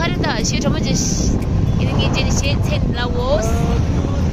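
People talking over a steady low rumble, with a voice rising and falling in pitch about three seconds in.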